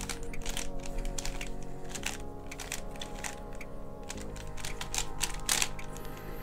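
Layers of a Sengso five-layer Magic Tower, a plastic twisty puzzle, being turned quickly by hand: an irregular run of light plastic clicks and clacks, thickest in the first two seconds and again near the end. Steady background music plays under it.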